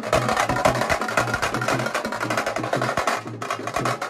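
Chatal band drums playing a fast, dense beat of rapid strokes over a repeating low pulse.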